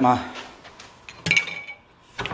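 A single sharp clink about a second in, with a short high ring, as a PVC pipe fitting is set down in the metal jaws of a bench vise.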